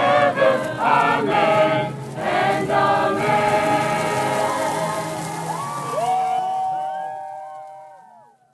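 A crowd of voices singing a hymn together. About six seconds in, the singing thins to a few voices that slide up and down in pitch, and the sound fades away by the end.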